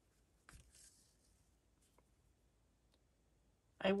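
Needle and thread being drawn through layered fabric in hand stitching: one faint rustle about half a second in, then a couple of faint ticks.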